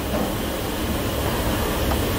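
A steady, even rushing noise, with no speech.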